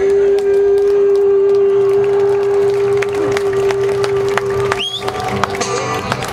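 Live Acehnese song holding one long steady note that stops just before the end, with crowd noise and scattered claps beneath it. A short rising whistle from the audience comes about five seconds in.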